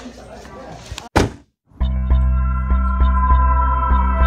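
Background room noise, then a sudden single hit with a short falling sweep about a second in, a brief moment of total silence, and background music starting with a strong steady bass, held tones and a light regular beat.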